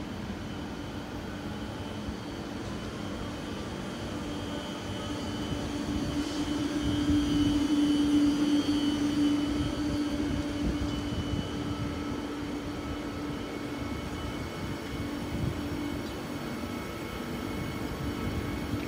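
TER Hauts-de-France passenger train moving along the track, a steady low hum with faint higher whines. It grows louder around the middle and then eases off.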